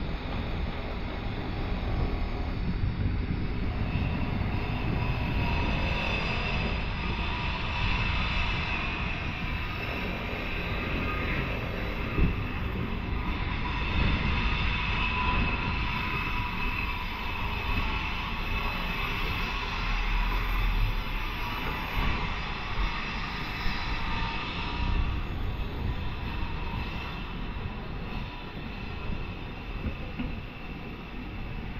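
Steady outdoor street noise: a continuous low rumble with a faint drone throughout.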